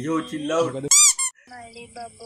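A short, loud, high-pitched squeak about a second in, made of two quick rising-and-falling chirps, between stretches of speech.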